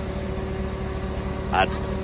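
Hummer H2's swapped-in 6.0 LS V8 idling: a steady low rumble with a faint even hum over it.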